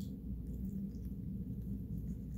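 Steady low background hum of room noise with no distinct event.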